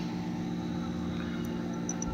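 A steady, unchanging mechanical hum made of several low constant tones, like a motor or engine running at a distance.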